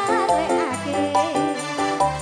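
Live ndolalak band music: steady held chords and a bass line, with a singer's wavering melody over them.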